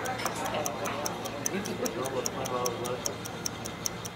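Rapid, even clock-like ticking, about four ticks a second, with an indistinct voice over it in the middle.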